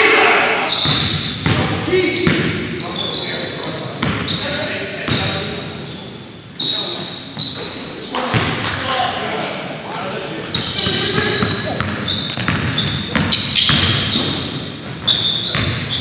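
A basketball being dribbled and bounced on a hardwood gym floor, with repeated short thuds and sneakers squeaking as players run the court, echoing in a large gymnasium.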